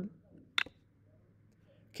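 A single sharp click about half a second in, over quiet room tone: a computer click as a code block is dropped into place in an editor.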